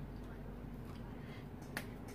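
One sharp plastic click near the end as a marker pen is set down among the other pens, over a faint steady low hum.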